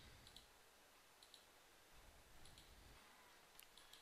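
Near silence with a few faint computer mouse clicks, some in quick pairs, as drop-down filters are set in the software.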